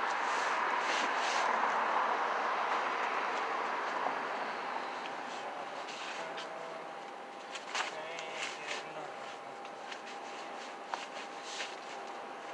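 A tarp and tent floor rustling and crinkling as they are pressed and smoothed down by hand to work out air bubbles from the contact-cemented layer. A rushing noise swells early and slowly fades, and scattered crinkles and taps follow in the second half.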